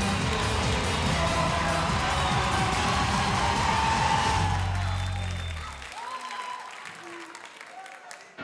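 Loud TV-show music with a heavy bass, over audience applause and cheering. The sound dies away about five to six seconds in, leaving the hall much quieter.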